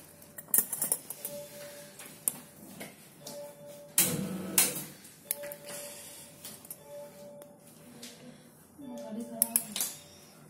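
Steel surgical instruments clicking and clinking as they are handled, with a short electronic beep recurring about once a second and brief low voices.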